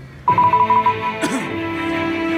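Destiny of Athena slot machine sounds: a rapid ringing trill of electronic beeps as an owl is picked in the bonus, then the machine's sustained music as the free games begin.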